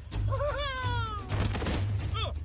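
An animated dinosaur's high, wavering vocal cry that glides down in pitch for about a second, followed by a short noisy burst, over a steady low music bed.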